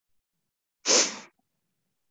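A single short, sharp burst of breath noise from the presenter close to the microphone, about a second in.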